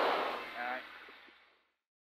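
Rally car cabin noise, engine and gravel road, fading out to silence about one and a half seconds in, with a brief pitched sound just before the fade ends.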